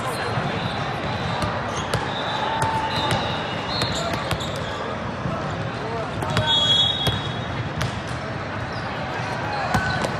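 Busy multi-court volleyball hall: a steady babble of players' and spectators' voices with scattered thuds of volleyballs being bounced and hit. A referee's whistle sounds about six and a half seconds in to signal the serve, and a sharp smack of the serve comes near the end.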